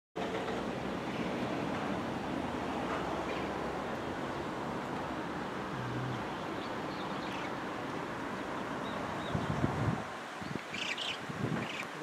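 Wind buffeting the camera microphone, a steady rushing noise that eases about ten seconds in.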